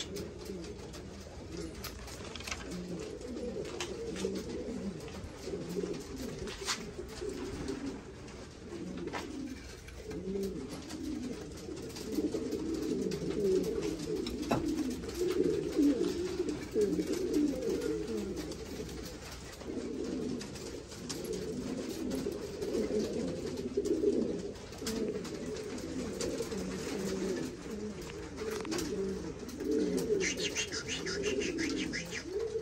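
Buchón Gaditano pouter pigeons cooing continuously, a low, rolling coo that grows louder about halfway through, with a few faint clicks.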